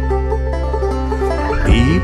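Acoustic folk song between sung lines: plucked strings over sustained low notes, with the singer's voice coming back in near the end.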